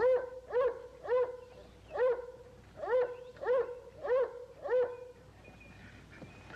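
A dog barking repeatedly: about nine short barks, roughly half a second apart, stopping about five seconds in.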